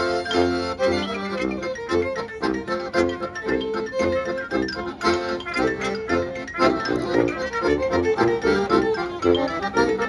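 Klezmer band playing live, with accordion prominent alongside violin, clarinet, sousaphone, mallet percussion and drum, on a steady beat.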